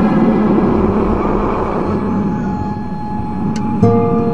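Loud, dense, distorted rumbling noise with faint steady tones under it, typical of a deliberately distorted meme soundtrack; clear sustained musical notes come in just before the end.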